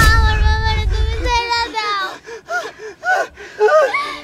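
A person's voice: a long held cry over a low rumble that stops about a second and a half in, then a string of short gasping sounds.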